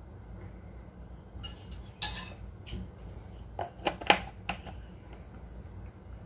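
Scattered clinks and knocks of kitchen utensils against a stainless steel mixing bowl, with sharp ones about two seconds in and a cluster around four seconds in.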